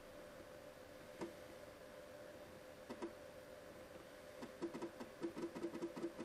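3.5-inch 1.44 MB floppy drive loading a program: the read head seeks back and forth, giving a few faint isolated clicks and then a quick irregular run of small ticks over the last second and a half, with a faint steady hum throughout.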